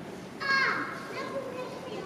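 Low murmur of a quiet crowd, broken about half a second in by one brief high-pitched call from a child, falling in pitch.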